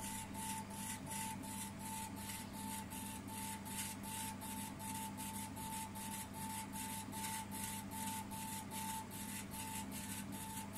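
K40 CO2 laser engraver raster-engraving: the stepper-driven laser head moving back and forth gives a pulsing whine about two to three times a second, over a steady low hum.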